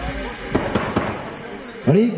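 A handful of sharp knocks in quick succession, within about half a second, as background music fades; a man's voice comes in near the end.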